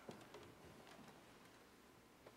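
Near silence, with a few faint taps and clicks in the first second as a large book is set down on a wooden lectern and handled.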